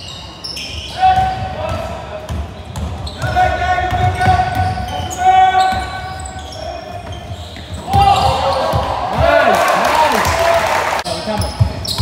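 Basketball game on an indoor court: the ball thumping as it is dribbled on the hard floor, sneakers squeaking, and players and spectators calling out, echoing in the large hall. A louder stretch of shouting and crowd noise comes about two-thirds of the way through.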